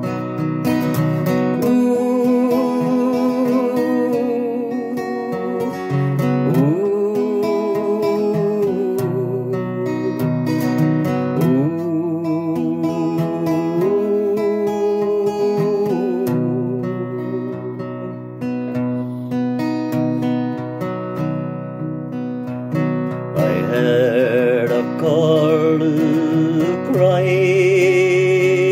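Steel-string acoustic guitar strummed steadily under a man's voice singing long held notes with vibrato, sliding between pitches; the voice rises higher and louder near the end.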